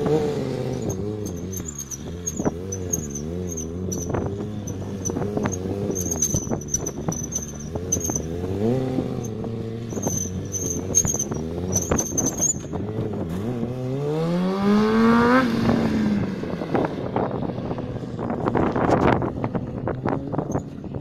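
Motorcycle engine revving up and down while the rider holds a wheelie; the throttle rises and falls every second or so. About fifteen seconds in, one long climbing rev peaks and then drops away.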